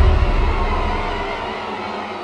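The decaying tail of a deep cinematic boom: a low rumble with a noisy wash above it, fading steadily away.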